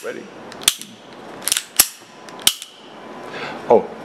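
Four sharp metallic clicks, spread over about two seconds, from the action of an unloaded Ruger LCP pocket pistol being worked by hand just after reassembly.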